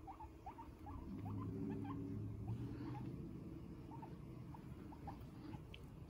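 Guinea pigs making faint short rising squeaks, a few a second, with a low hum underneath that is strongest for a couple of seconds about a second in.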